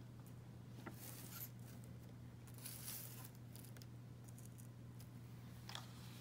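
Quiet room tone with a steady low hum, broken by a few faint rustles and light clicks of objects and cloth being handled on a tabletop tray, about a second in and again near three seconds.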